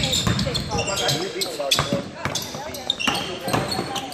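Basketball bouncing on a hardwood gym floor during live play, a string of sharp bounces with sneakers squeaking and players' voices calling out in the echoing gym.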